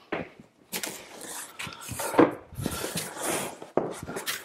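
Large cardboard box being opened by hand: the flaps scrape and rustle as they are pulled back, with a sharp knock about two seconds in.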